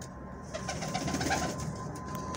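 Domestic pigeon cooing: a short run of quick, repeated low notes from about half a second in to about a second and a half.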